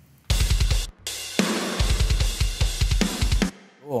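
Playback of a mixed metal drum kit recording: fast bass drum strokes under snare, cymbals and hi-hat. It starts about a third of a second in, drops out briefly near one second, resumes and stops just before the end.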